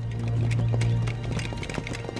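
Dramatic background score with a held low note that fades after about a second and a half, over a patter of quick, light clicks and taps.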